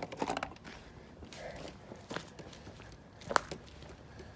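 Footsteps scuffing on a concrete path with light rustling and handling noise, scattered soft clicks and a single sharper click a little past three seconds in.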